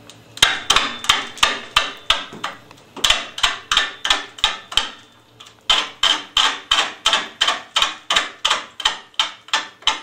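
Roughing gouge taking an interrupted cut on a large, out-of-round big-leaf maple root turning slowly on a VB36 wood lathe: the tool strikes the high spots in a rhythm of about four sharp knocks a second, pausing briefly twice, a little before three seconds in and again around five seconds.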